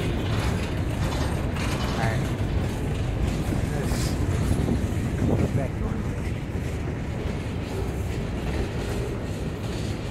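Freight cars of a passing freight train (boxcars and covered hoppers) rolling by close up: a steady rumble of steel wheels on rail, with rattles and a few clanks from the car bodies and couplers.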